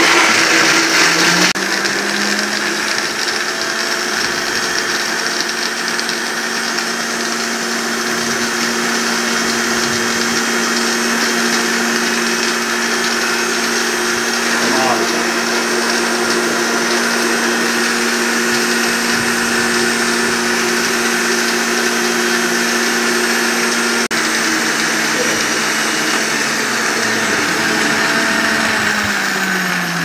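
Two electric countertop blenders running at full speed, crushing phalsa berries in water into juice: a loud, steady motor hum with a whirring hiss. The pitch steps up about a second and a half in and sinks near the end as the motors run down.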